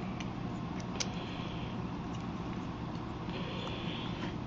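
Handling noise from a plastic Action Fleet X-Wing toy as its landing gear is worked: one sharp plastic click about a second in, a few lighter clicks and brief rubbing, over a steady low hum.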